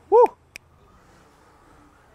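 A short, loud cheer of 'woo!' from a person, its pitch rising and then falling, followed about half a second in by a single sharp click of a camera shutter; after that only a faint steady outdoor hiss.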